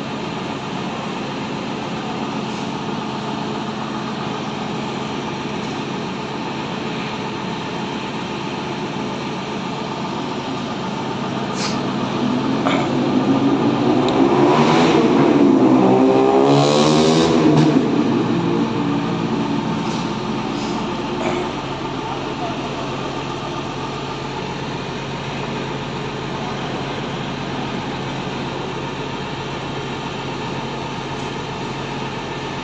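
Steady hum of idling buses, with a vehicle passing close by in the middle: its engine noise swells over a few seconds, shifts in pitch and fades away.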